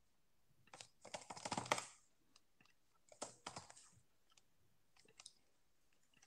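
Faint computer keyboard typing and clicking in short bursts: a run of keystrokes about a second in, another around three seconds in, and a couple of clicks near the end.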